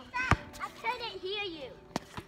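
Children's and adults' voices talking at a distance, with two short knocks, one about a third of a second in and one near the end.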